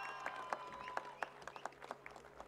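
Audience applause thinning out to scattered single claps that die away.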